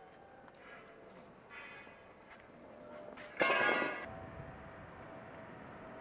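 Church bells ringing faintly, with one louder stroke about three and a half seconds in that hums on as it fades.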